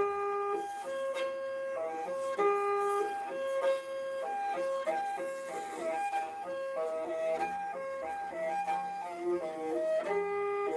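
Morin khuur (Mongolian horse-head fiddle) bowed in a horse-gallop rhythm: short notes stepping between a few pitches in a phrase that repeats every couple of seconds, the two phrases of the rhythm played together.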